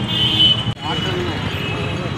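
Street traffic noise, a steady low rumble, under men's voices, with a brief abrupt dropout less than a second in where the recording is cut.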